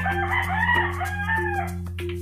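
A rooster crowing: one long, wavering call of about two seconds.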